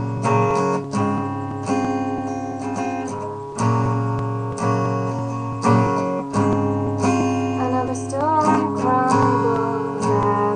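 Acoustic guitar strumming chords, an instrumental introduction to a song, with a fresh strike every second or so.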